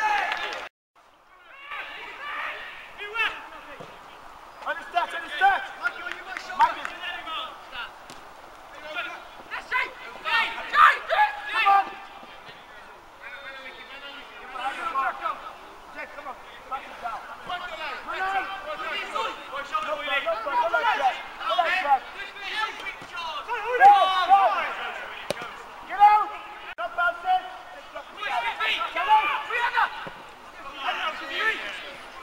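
Indistinct men's voices talking and calling out across a football pitch, with a short break in the sound about a second in.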